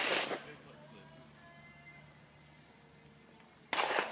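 Two gunshots from a nearby shooting range, about four seconds apart, one at the very start and one near the end, each a sharp crack with a short echoing tail.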